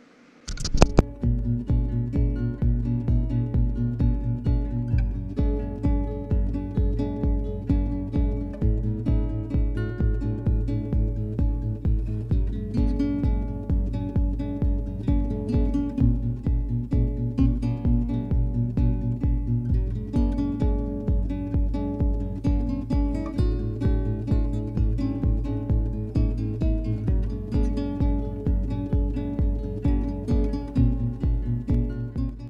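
Background music: guitar over a steady low beat, about two beats a second.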